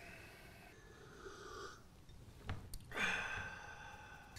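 Quiet breathing and mouth sounds from a man sipping tea from a glass. There are two light clicks a little past halfway, and a louder breath about three seconds in.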